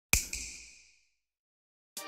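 Intro sound effect: two quick sharp hits followed by a high ringing tone that fades away over about a second, then silence.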